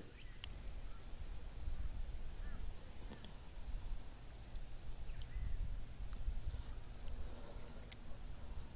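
Faint handling of a fishing rod and spinning reel: a few scattered light clicks and taps, one sharper near the end, over a steady low rumble.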